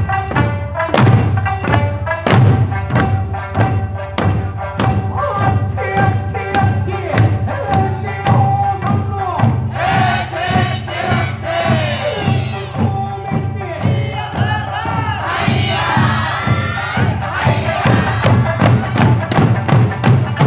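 Eisa drum dance: barrel drums and paranku hand drums struck together in a steady beat over a sung Okinawan folk melody. About halfway through, and again a few seconds before the end, the dancers break into loud group shouts (hayashi calls).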